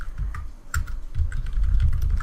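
Computer keyboard typing: an irregular run of key presses as a short word is typed, each keystroke a sharp click over a dull low thud.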